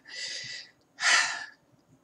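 A woman's two audible breaths between phrases, the second louder and sigh-like, about a second in.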